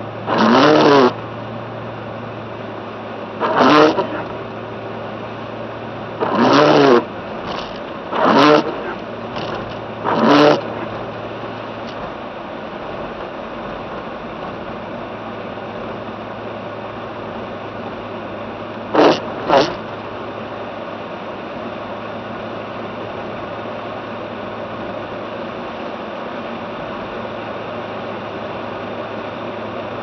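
Car cabin while driving: a steady low engine and road hum. Over it come several short, loud pitched sounds, five in the first eleven seconds and a quick pair near twenty seconds.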